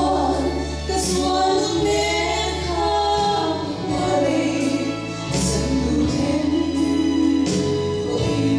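Two women singing a gospel hymn together through microphones, with keyboard accompaniment holding sustained bass notes.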